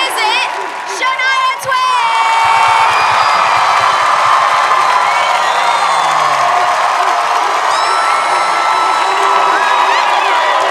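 Studio audience cheering loudly. A woman's voice on a microphone is heard briefly at the start, and the cheering swells about two seconds in. The cheer is the crowd's vote for one contestant.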